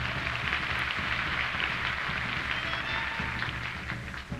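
Audience applause on the 1938 live concert recording, an even crackling wash of clapping over the low hum of the old recording.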